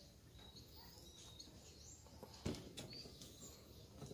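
Near silence: faint outdoor background with a few faint bird chirps, and a single light knock about two and a half seconds in.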